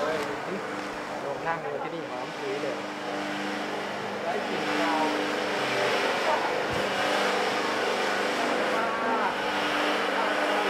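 Large pedestal fan running behind a screen door: a steady whoosh with a low motor hum, a little louder in the second half.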